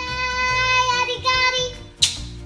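A song sung by a child's voice over music, with held notes that move from one pitch to the next.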